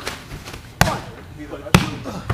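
A referee's hand slapping the wrestling ring mat in a pin count: a faint slap at the start, then two loud sharp slaps about a second apart, the count broken off by a kick-out before three.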